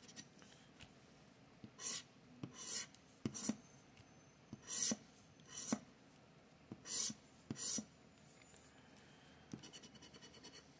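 Scratch-off lottery ticket having its coating scraped off with a scratcher: about seven short rasping strokes, mostly in pairs, with quiet gaps between.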